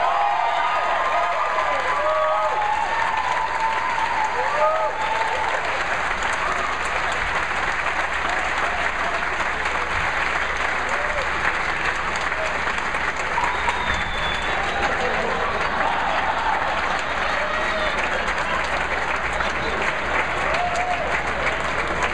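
Audience applauding steadily, with a few voices calling out over the clapping in the first few seconds.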